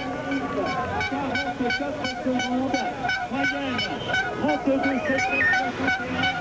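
Noisy crowd in a race finish area: many voices shouting and calling over one another, with horns tooting and a high pitched sound pulsing about three times a second.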